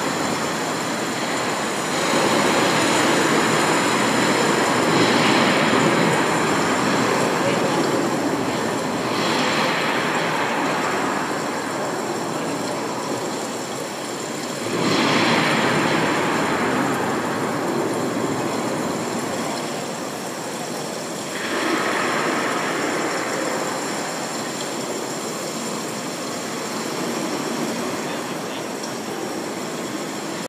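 Artificial indoor rainstorm: water falling onto a pool and wet paving in a steady hiss that swells up four times, with crowd chatter underneath.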